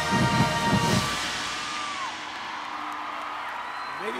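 Marching band's brass and drums holding the final chord of the show, cutting off about a second in. The crowd in the stands then cheers and applauds.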